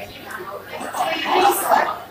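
A woman talking into a handheld microphone, with crowd noise behind her; the speech is loudest in the second half.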